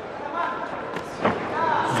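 A single sharp thud of a boxing punch landing, a little past halfway through, over arena background, with a man's voice starting up near the end.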